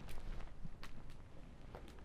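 Wood fire crackling in a metal fire bowl: about half a dozen sharp, irregular snaps and pops.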